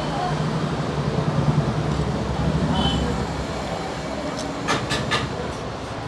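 Restaurant room noise: a steady low rumble with faint background voices, and a few sharp clinks about five seconds in.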